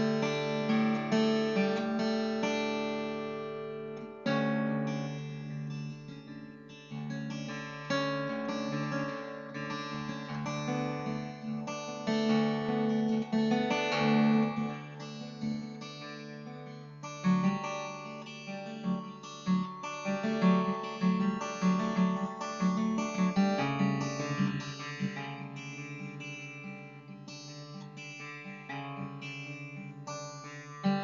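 Mahogany steel-string acoustic guitar in DADGAD tuning, picked continuously: low open strings ring on under changing melody notes played up the neck.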